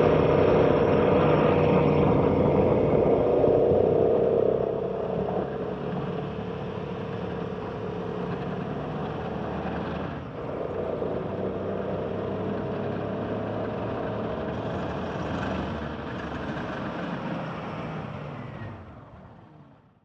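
Motorcycle engine running steadily under way, heard from on board with road and wind noise. It is louder for the first few seconds, breaks briefly at a cut about halfway through, and fades out at the end.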